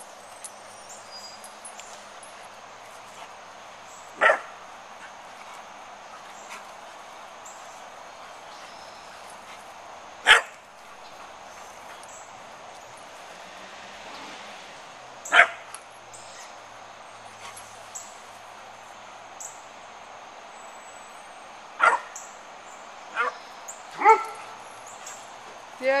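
A dog barking: single sharp barks spaced several seconds apart, about six in all, three of them close together near the end.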